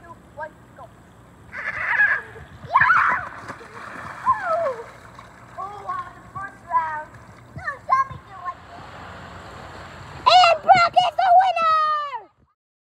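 Water splashing as a child slides down a wet slip 'n slide about two seconds in, followed by children's shouts and squeals, loudest near the end.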